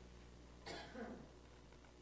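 A single faint cough, short and breathy, about two-thirds of a second in, against near silence.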